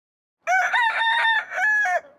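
A rooster crowing once, starting about half a second in and lasting about a second and a half, with a short dip in pitch and level near the end.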